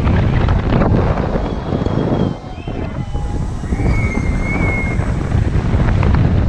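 Wind rushing and buffeting over an action camera's microphone as a Star Flyer swing seat circles at speed high up the tower, a steady low rumbling roar that eases briefly a little over two seconds in.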